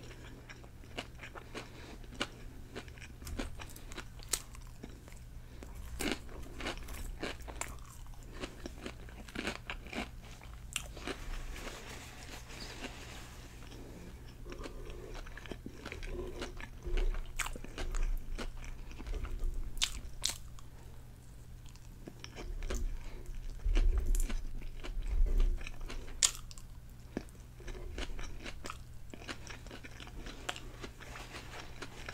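Close-miked biting and chewing of a loaded sub sandwich: irregular wet mouth clicks and crunches, with heavier low chewing thumps about halfway through and again near the end.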